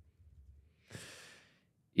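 A single short breath close to a microphone, about a second in and lasting about half a second, otherwise near-quiet room tone.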